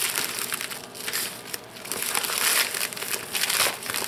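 A plastic mailing envelope crinkling and rustling as hands pull its torn end open, with many small crackles.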